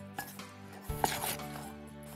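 A metal spoon scraping and knocking in a stainless steel bowl as baby corn pieces are tossed in a dry cornflour-and-semolina spice coating, with a few short scrapes about a second in.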